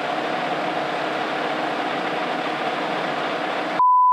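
An engine idling steadily with a low hum. Near the end it cuts off suddenly and a loud steady 1 kHz test tone begins.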